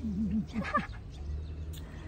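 A brief wavering vocal sound with a few gliding tones in the first second, then a low steady outdoor rumble.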